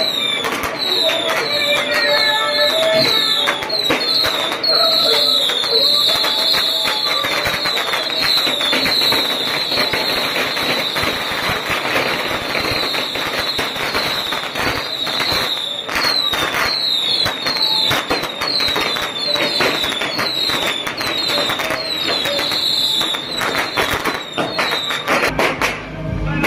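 Strings of firecrackers crackling rapidly and without a break, with a short high falling chirp repeating about twice a second. Over the first few seconds, horns play a melody through the crackle.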